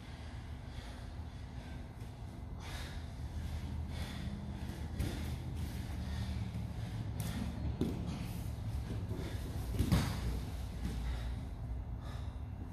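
Two people grappling on gym mats: heavy breathing and scuffling, with a few thumps on the mats, the loudest about ten seconds in.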